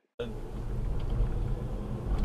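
Low road and tyre rumble heard inside the cabin of a Tesla as it picks up speed on a rough rural road. It starts abruptly just after the beginning.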